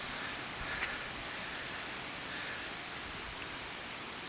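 Steady outdoor background hiss, even and without any distinct event.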